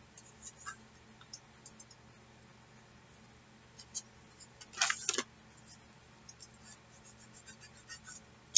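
Faint handling sounds of paper journal pages being pressed down by hand: scattered small clicks and rustles, with one louder short scrape of paper about five seconds in.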